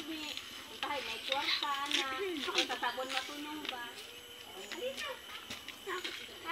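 People talking, children's voices among them, with voices overlapping through the stretch.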